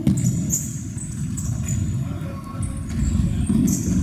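Indoor futsal play: sneakers squeaking briefly and repeatedly on the sports-hall floor over a steady low rumble of hall noise, with a sharp knock right at the start.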